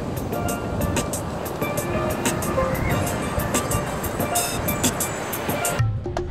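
Steel pan played with mallets: a quick run of struck, ringing notes over a steady low outdoor rumble, cut off suddenly near the end.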